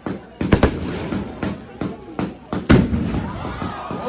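Fireworks going off in a rapid string of sharp bangs with crackling between them, the loudest bang coming just before three seconds in.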